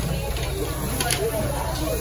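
Red-marinated meat sizzling on a wire grill over charcoal, a steady hiss over a low hum, with a single metal tong click about a second in.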